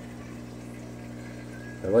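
Steady hum and bubbling of aquarium equipment in a fish room: air pumps driving sponge filters.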